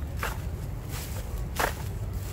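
Two footsteps about a second and a half apart over a low steady rumble.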